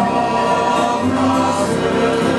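A men's vocal group singing a folk song in harmony, holding long notes together, accompanied by plucked string instruments and a double bass.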